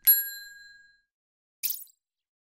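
A bright bell-like 'ding' sound effect that rings out and fades over about a second, followed by a short click near the end.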